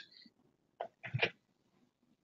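A person's brief sneeze-like burst of breath and voice: a short faint lead-in followed by a louder burst, heard over a video-call microphone.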